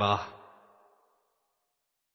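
A man's voice reading Arabic ends its last word in the first moment, with a short echo dying away within about a second, then dead silence.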